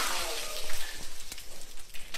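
Water from freshly cut plastic water bottles spattering and dripping onto a wooden table, a steady patter with scattered small crackles and knocks.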